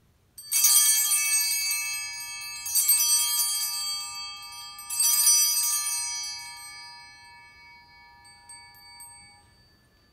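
Altar bells (a cluster of small bells) rung three times at the elevation of the host during the consecration, about two seconds apart, each ring sustaining and fading slowly, the last dying away over several seconds.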